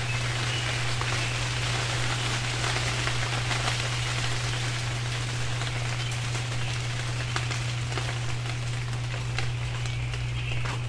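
Steady rain dripping and pattering, made up of many small irregular drop ticks, over a steady low hum.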